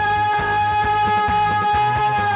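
Korean trot song performed live: a woman's voice holds one long, steady high note over a backing track with bass and drums.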